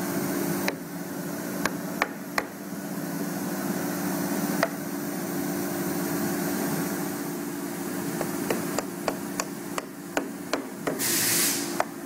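Plywood dovetail drawer parts being pushed together by hand, with scattered knocks and then a quick run of soft-faced mallet taps near the end as the tight-fitting joints are seated. A steady hum runs underneath, and a brief hiss comes just before the end.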